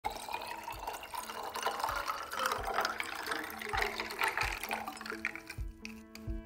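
Liquid poured in a steady stream from a glass bottle into a glass tumbler over ice cubes, splashing as the glass fills, with a faint rising tone as it fills. Soft background music with a regular low beat runs underneath and comes forward near the end as the pouring stops.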